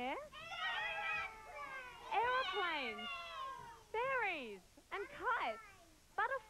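Several young children calling out answers at once in high voices, their overlapping calls swooping up and down in pitch, then a few separate shouts in the second half.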